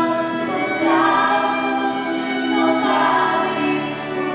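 Female vocal trio singing in harmony, holding sustained notes with vibrato, accompanied by a digital piano and a violin.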